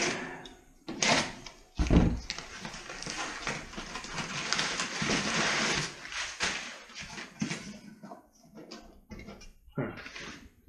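Small cardboard boxes being handled and opened. A knock about a second in and a heavy thump near two seconds in, then a few seconds of rustling and scraping of cardboard and paper, then scattered light knocks.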